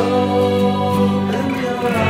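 Psychedelic progressive rock music: sustained, held chords over a steady bass, with a lead line that bends in pitch partway through.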